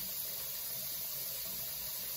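Steady hiss of background noise with a faint low hum, unchanging throughout.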